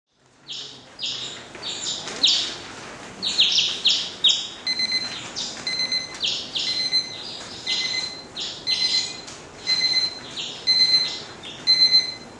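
Birds chirping in quick high calls, joined about five seconds in by an electronic alarm clock beeping about twice a second, the two sounding together.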